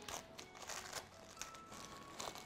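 Thin translucent wrapping crinkling and crackling irregularly as hands unwrap a pair of in-ear earphones, with faint background music underneath.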